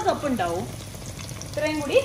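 Hot oil sizzling steadily in a frying pan as sliced ginger, shallots and curry leaves fry in it. A voice speaks briefly at the start and again near the end.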